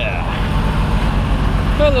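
Semi-truck diesel engine idling with a steady low rumble.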